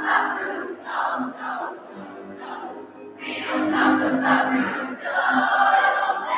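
Large middle-school choir singing in many voices, swelling louder about three seconds in.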